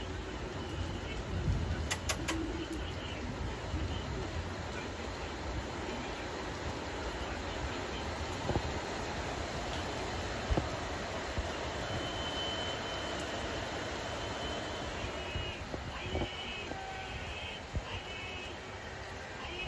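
Steady rain with thunder rumbling low; the rumble is strongest about two seconds in.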